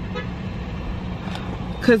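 Steady running noise of a car heard from inside the cabin: a low rumble with a constant hum. Speech starts again near the end.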